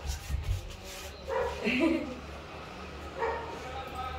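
Puppy giving a couple of short barks and yips while playing with a toy, with a few soft thumps at the start.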